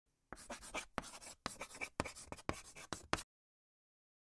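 Chalk writing on a chalkboard: a quick run of short scratchy strokes, about a dozen over roughly three seconds, that stops abruptly.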